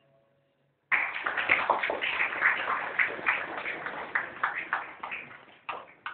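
Audience applauding: a sudden burst of many hands clapping about a second in, thinning out and dying away near the end.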